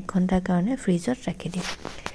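A woman talking, with a brief hissing noise near the end.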